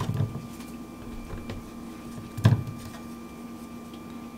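A knife cutting an aloe vera leaf on a wooden cutting board: a soft knock just after the start and a sharper, louder knock about two and a half seconds in, over a steady faint hum.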